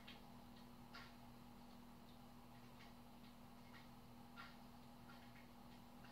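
Near silence: faint room tone with a low steady hum and a few faint, irregular ticks. No spoken reply comes from the Amazon Echo, whose voice output has failed while it still processes the request.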